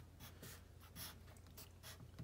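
Faint scratching of a pen writing on paper, in several short strokes.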